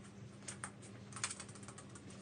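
Short clusters of rustling clicks as a small dog drags a quilted blanket up onto a leather sofa: one brief burst about half a second in and a longer one just after a second, over a faint steady hum.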